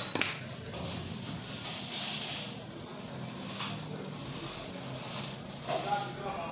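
Soft, uneven rustling of fabric being handled and pinned, with a single sharp click just after the start.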